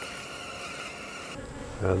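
Honey bees buzzing steadily over an open brood box.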